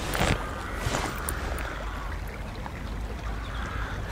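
Steady rushing noise of flowing river water, with a low rumble underneath.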